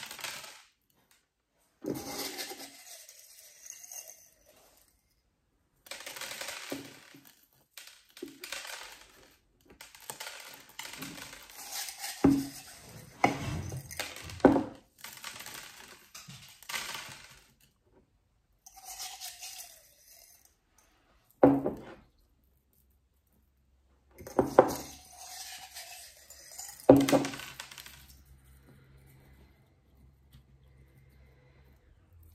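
Small stones clinking and rattling in short handfuls with pauses between, as pebbles are scooped from a ceramic cup and dropped among succulents onto the potting soil. A few sharper clicks of stone on stone or on the cup stand out.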